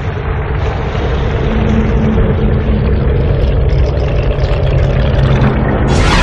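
Engine-like sound effect: a loud, steady mechanical rumble with a low hum, under a logo animation, with a sudden burst starting at the very end.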